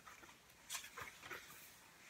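Faint rustles and soft taps of a picture book's paper pages being handled and turned, a few short sounds bunched together about a second in.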